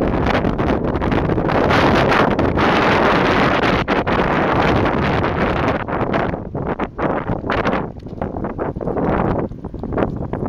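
Wind buffeting the microphone of a camera carried on a moving bicycle, a loud continuous rush for about six seconds that then breaks into gusts.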